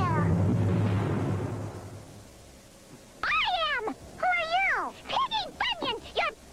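A rumbling cartoon sound effect that fades away over the first two seconds, then, after a short lull, a run of high, swooping wordless cries from cartoon character voices.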